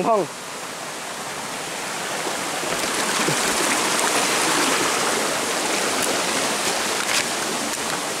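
Shallow rocky forest stream running over stones: a steady rush of water that grows a little louder a couple of seconds in.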